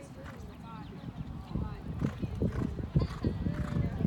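Hoofbeats of a cantering horse on sand arena footing: a run of dull, rhythmic thuds that starts about a second and a half in and grows louder as the horse comes closer.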